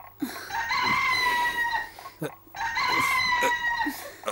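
A rooster crowing twice, each crow a long, held call lasting about a second and a half.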